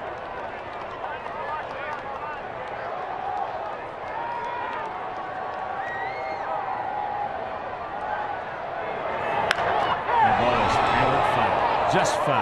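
Ballpark crowd chatter and calls. About nine and a half seconds in comes a sharp crack of the bat on a hard-hit foul ball, and the crowd noise then rises.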